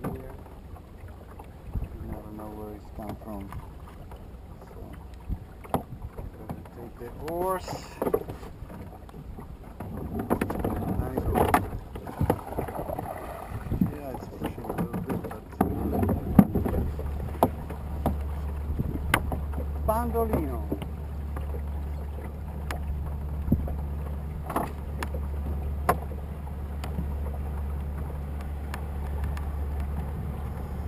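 Small wooden sailing boat under way in wind: wind rumble on the microphone and water moving past the hull, with scattered short knocks. A steady low hum sets in about halfway and continues.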